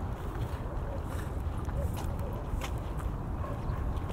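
Wind buffeting the microphone, a steady low rumble, with a few light ticks from footsteps on stone.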